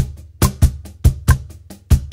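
Meinl Artisan Cantina Line cajon played with bare hands in a samba rock groove at 70 BPM, mixing deep bass tones with sharp slaps near the top edge at about four strokes a second. A metronome click marks each beat.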